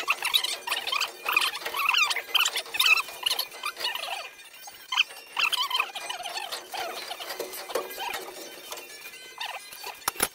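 Sped-up time-lapse audio: voices and work sounds turned into a rapid, irregular run of short high-pitched squeaks and chirps.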